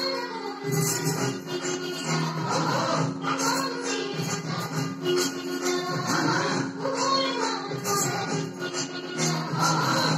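Folk dance music playing, with quick steady percussion over long held notes and a gliding melody line.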